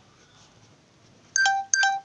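Two short electronic beeps in quick succession near the end, each held at one steady pitch, like a phone's tone.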